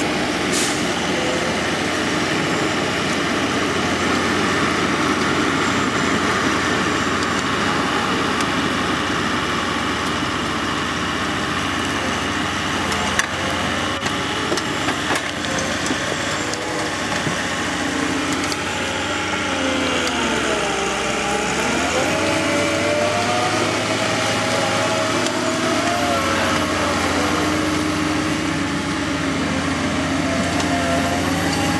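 Ponsse Buffalo forwarder's diesel engine running steadily as the loaded machine drives over a forest track, its note rising and falling for several seconds past the middle. A single sharp click about halfway through.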